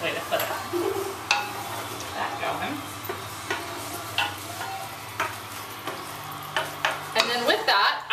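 Sliced garlic sizzling in hot olive oil in a stockpot as it sweats, stirred with a wooden spoon that knocks against the pot several times.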